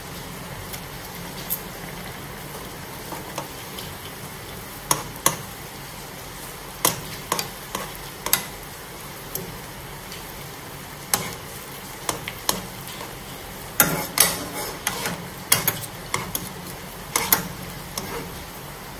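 Pan of noodle broth simmering with a steady hiss, while a nylon ladle stirs and breaks up a block of instant noodles, knocking against the pan in irregular light taps that come more often in the second half.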